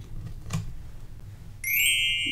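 A faint tap about half a second in as a paper cutout is handled. Near the end a steady high shimmering tone comes in: a magic sparkle sound effect.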